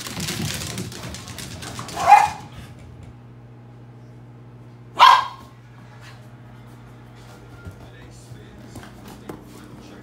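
A small dog barks twice, sharply, about two and five seconds in. Before the first bark there is a couple of seconds of scuffling noise.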